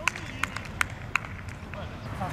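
Amateur football match on an artificial-turf pitch: players' voices in the background and four sharp taps about a third of a second apart in the first second or so.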